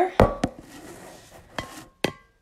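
Handling noise from a handheld phone being moved and repositioned: three sharp knocks, two close together early and one near the end, each leaving a faint ringing tone, with soft rubbing between.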